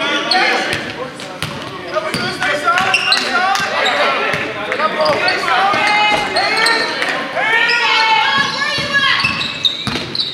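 Basketball game in an echoing gym: a ball bouncing on the hardwood court and sneakers squeaking, under a steady mix of players' and spectators' voices calling out.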